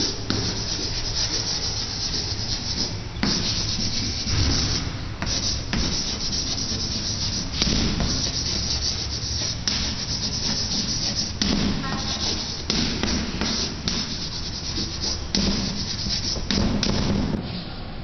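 White chalk scratching across a chalkboard as a hand writes a line of cursive, in a run of short strokes with brief breaks between letters and words, quieter near the end.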